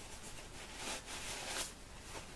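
Faint rustling of tissue paper as a tissue is pulled out of a tissue box through a crocheted cover.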